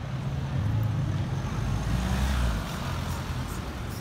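A car driving past close by, its engine and tyre rumble swelling to a peak a little past halfway and then easing, over steady street traffic noise.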